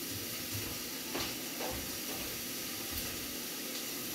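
Steady hiss of steam from pots cooking on a gas stove, with a couple of faint knocks between one and two seconds in.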